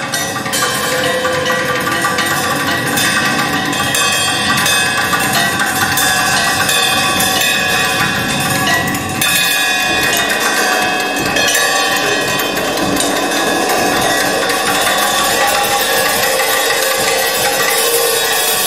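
Improvised live music: a dense, continuous texture of struck percussion, with many hits over sustained, ringing metallic tones.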